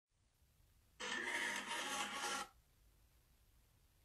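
A brief burst of several steady tones sounding together, about a second and a half long, starting about a second in and cutting off abruptly.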